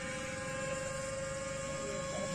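Motor and propeller of a Zagi RC flying wing in flight, giving a steady whine of even pitch.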